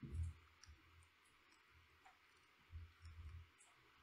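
Near silence: a few faint clicks of a computer mouse and keyboard, with soft low thumps about three quarters of the way through.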